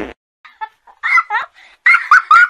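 The tail of a cartoon fart sound effect cuts off right at the start. Then Pocoyo giggles in a string of short, high laugh syllables that bounce up and down in pitch and grow louder and quicker near the end.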